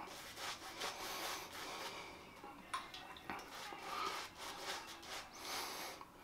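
A two-band silvertip badger shaving brush working lather over the face and stubble, giving a soft, continuous rubbing and brushing. A couple of light clicks come a little under halfway through.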